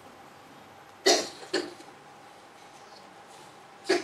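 A man coughing twice into a handheld microphone, two short coughs about half a second apart, about a second in.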